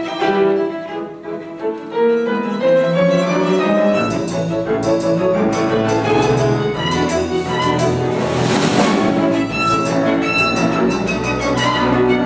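Live small ensemble: a solo violin playing a melody over piano. About four seconds in, the double bass and drum kit join, and a cymbal wash rises a little past halfway.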